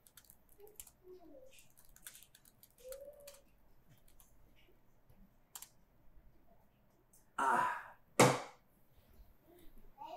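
Faint laptop keyboard typing and clicking, then two short, loud breathy noises a little under a second apart near the end.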